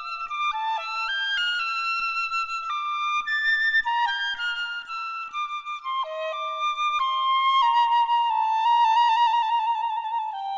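Piccolo playing a slow, lyrical melody of long held notes that step mostly downward, with a fluttering trill in the last two seconds.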